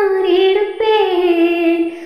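A woman singing solo, unaccompanied, in long held notes. A short break comes just before a second in, then a phrase that slides down and holds a lower note.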